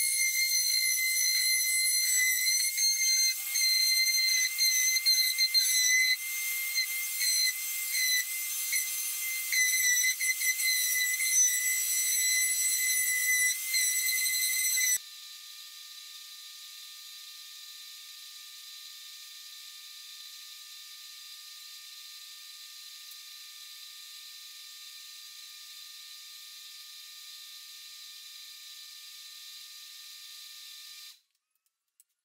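Electric orbital sander running on a plywood countertop: a loud, high-pitched motor whine over the hiss of sandpaper on wood, rising and falling as it is pressed and moved. It stops suddenly about halfway through, leaving only a faint steady high hum.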